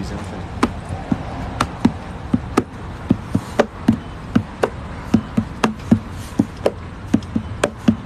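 Hand drumming on the body of an acoustic guitar, played like a bongo: a steady rhythm of slaps and low thumps, about two to three a second.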